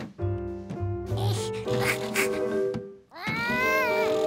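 Light cartoon background music, then about three seconds in a cartoon monkey's voice gives a rising, then held, squeal as he strains to lift a toy loader's scoop.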